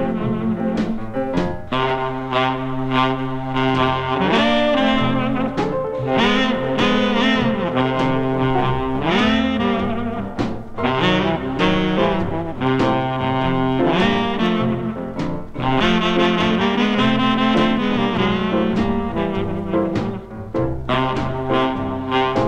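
Instrumental band recording led by saxophone, with a brass section playing sustained, changing notes. The sound is dull in the treble.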